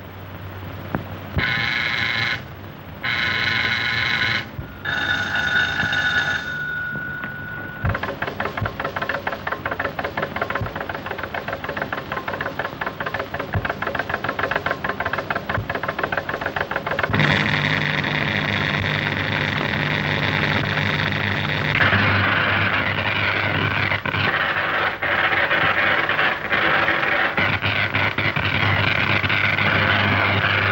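Electrical sound effects from an early sound film. Three short pitched tones and a held tone come first, then a rapid, steady electrical buzz of radio-wave apparatus. Around the middle the buzz turns to a steadier pitched hum, and near the end it goes back to buzzing.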